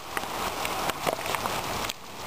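Heavy rain falling on a street: a steady hiss of rain, with a few sharper taps of nearby drops scattered through it.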